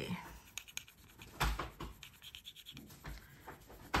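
A silver ring scraped in short scratchy strokes across a black jewelry testing stone, leaving a streak of metal for a silver acid test.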